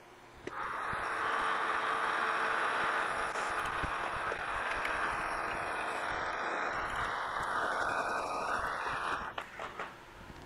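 Precision Matthews PM-1127 metal lathe taking a final light turning pass on a stud, a steady hiss of the tool cutting along the part. It starts about half a second in and stops shortly before the end.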